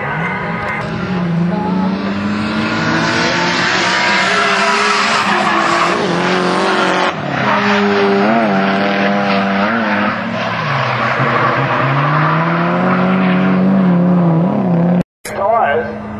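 Drift cars' engines revving at high load, their pitch rising and falling, with tyres squealing as they slide. The sound cuts out briefly near the end.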